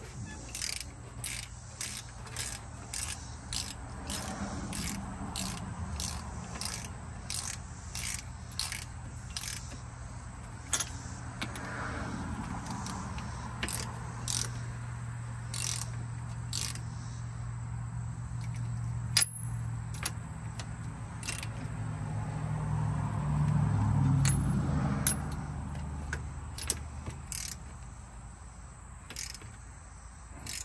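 Ratchet wrench clicking in short back-and-forth strokes, about two clicks a second, as a fastener is tightened down, over a steady low hum that swells a little past the two-thirds mark.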